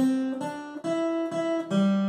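Acoustic guitar playing a slow melody harmonised in block chords: a new chord plucked about every half second, each left ringing.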